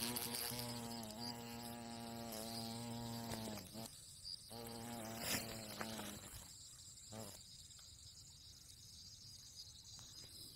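A wasp buzzing in bursts as it struggles in a praying mantis's grip: one steady buzz of about three and a half seconds, a short pause, a second buzz of about a second and a half, then a brief last one.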